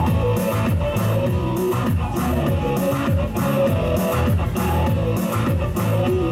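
Live pop-rock song played through outdoor stage speakers: electric guitar and bass over a steady beat, in a stretch without vocals.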